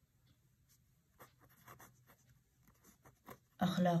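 Felt-tip marker writing on paper: a run of faint, short scratchy strokes as a word is written out, followed near the end by a spoken word.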